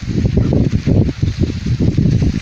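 Wind buffeting the microphone in loud, uneven rumbling gusts, with rustling of corn leaves as a maize stalk is handled.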